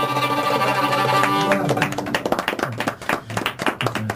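Violin holding the final note of a Greek folk tune, which ends about one and a half seconds in, followed by a few people clapping.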